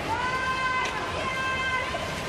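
A referee's whistle blown in one long, steady blast lasting about a second and a half, over the hubbub of the pool hall.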